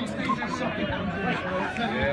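Indistinct chatter: several people talking at once, with no other distinct sound.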